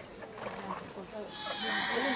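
Faint talking in the background, with a hiss of outdoor ambience rising about two-thirds of the way in.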